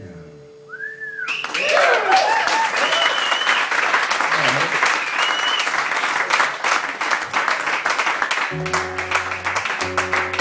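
An audience claps and cheers as the song ends, with several loud whistles; the clapping starts about a second in, after the last guitar chord fades. Near the end, acoustic guitar notes ring out again under the clapping.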